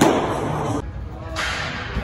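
A sharp crack at the start, a pitched baseball striking the catcher's glove, over background music with a sung line.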